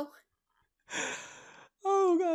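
A person sighing once: a long breathy exhale about a second in that starts strong and fades away.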